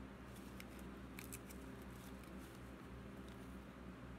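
Faint small clicks and light handling noise from a little mouse figurine and its tag being turned over in the hands: a cluster of clicks in the first second and a half, then a few scattered ones. A steady low hum runs underneath.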